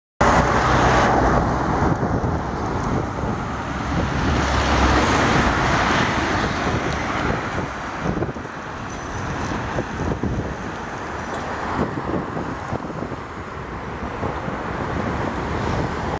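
Road traffic on a city street, with a Mercedes-Benz city bus, a minibus and cars driving past. The engine rumble and tyre noise are loudest over the first six seconds, then settle lower and steadier.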